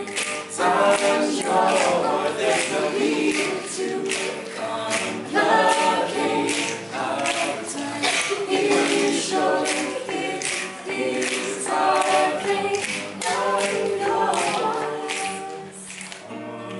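Small mixed-voice a cappella group singing a pop cover in close harmony, with a steady percussive beat underneath; the singing eases off near the end.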